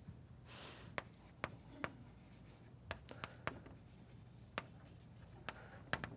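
Chalk writing on a blackboard, faint: short scratchy strokes and a series of sharp taps as the chalk meets the board.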